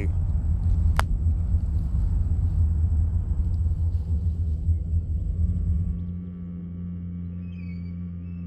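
Low, steady rumbling ambience with a sharp click about a second in. About six seconds in it gives way to a quieter, steady low drone with faint high wavering tones over it.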